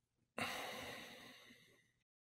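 A single sound starts suddenly and rings with several steady high tones, fading away over about a second and a half.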